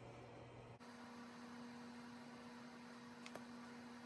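Near silence with a faint, steady electrical hum that jumps to a higher pitch about a second in, and one faint click near the end.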